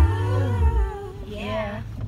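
A woman's voice singing in long, gliding, wavering notes, over heavy bass that stops short before a second in; quieter for the rest.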